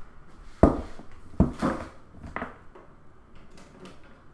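A few sharp knocks and clatters of household objects being handled in a small room: four strikes in the first half, the first two the loudest.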